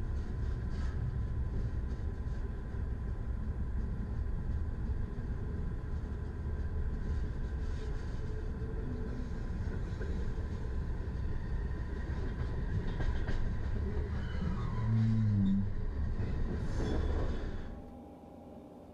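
SJ passenger train rolling along the track, heard from inside the carriage: a steady low rumble of wheels and running gear with faint clicks, briefly louder about fifteen seconds in. The rumble cuts off just before the end.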